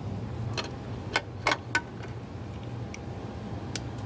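Sharp metallic clicks and clunks as a small combination safe is opened and the missile firing trigger is handled: three close together a little after a second in, another near the end. A steady low machinery hum runs underneath.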